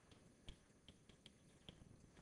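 Faint, sparse taps and clicks of chalk on a blackboard as an equation is written, about five sharp ticks in two seconds over quiet room tone.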